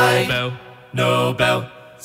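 Layered a cappella voices: a held chord ends and fades out, then a short sung chord comes in about a second later.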